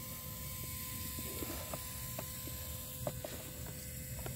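Faint, scattered small clicks and ticks from a hand handling an RC winch line and its small metal hook, over a steady faint hum.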